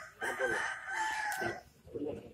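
A rooster crowing once, faintly: a single drawn-out call lasting over a second.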